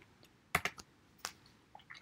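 A few faint, sharp clicks: two close together about half a second in, another a little past one second, and softer ticks near the end.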